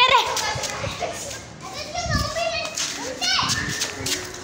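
Children's voices: boys chattering and calling out to one another while playing, in several short bursts.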